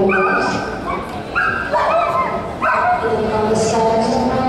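A dog gives four short, high-pitched whining yips in quick succession over the first three seconds.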